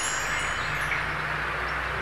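A shimmering, chime-like title sound effect: a steady wash of high hiss with a low hum beneath it and faint glints.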